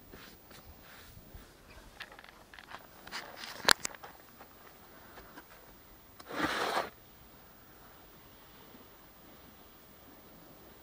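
Stones and a plastic recovery traction board being shifted by hand on soft ground under a van's front wheel: scattered small scrapes and knocks, one sharp knock a little before 4 s with a smaller one just after, and a short scrape lasting about half a second midway through.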